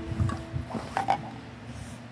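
Light knocks and clatter of plastic toys being handled, several separate taps spread over the two seconds. A faint steady tone in the background stops a little under a second in.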